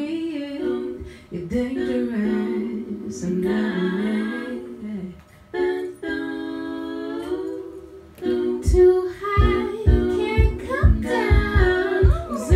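A woman singing live with several vocal lines stacked in harmony, including a long held chord around the middle. A steady low thumping beat comes in about two-thirds of the way through, roughly two beats a second, under the singing.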